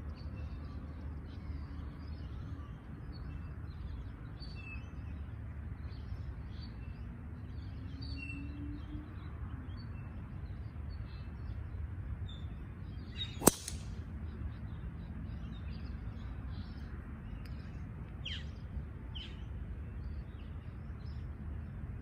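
A golf driver striking a ball off the tee: one sharp, ringing crack a little past halfway, the loudest sound by far. Birds chirp throughout over a low steady rumble.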